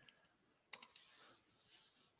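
Faint computer-keyboard keystrokes: a few soft clicks, the sharpest about three quarters of a second in.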